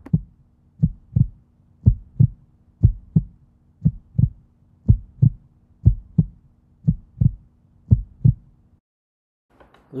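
Heartbeat sound effect: paired lub-dub thumps about once a second over a low steady hum. Both stop about a second before the end.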